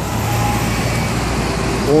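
Road traffic noise from a city bus approaching across an intersection, with a steady engine hum under the noise of its tyres.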